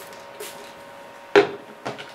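Two short spritzes from a hand-pump spray bottle of heat protectant misted onto hair, about half a second apart, the first a little over a second in.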